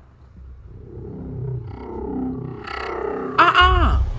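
Horror film trailer soundtrack: a dark music score that builds steadily in loudness, then a sudden loud hit with a tone bending in pitch near the end.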